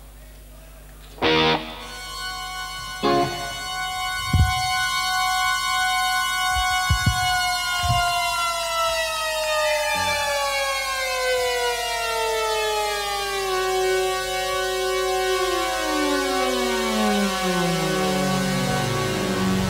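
Synthesizer played live: two short loud stabs, then a sustained bright chord rich in overtones that slowly slides down in pitch, holds steady for a moment, and breaks into several tones sliding lower near the end, with a few low thuds underneath.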